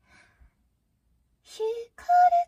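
A soft, breathy sigh-like exhale at the start. About a second and a half in comes a short, high-pitched wordless vocal sound.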